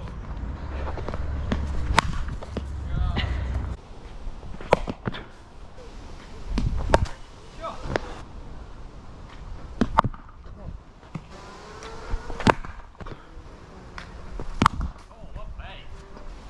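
Low wind rumble on the microphone for the first four seconds, then about six sharp knocks spaced two to three seconds apart, with faint voices in the background.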